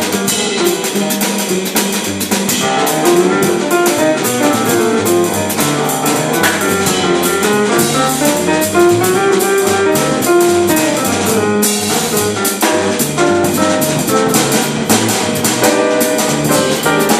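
Jazz piano trio playing live: grand piano, plucked double bass and a drum kit played with sticks, cymbal strokes keeping a steady swing pulse.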